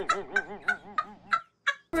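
High-pitched laughter from a boy in a run of quick bursts, each rising and falling in pitch, about three a second. It breaks off about one and a half seconds in, with one short last burst near the end.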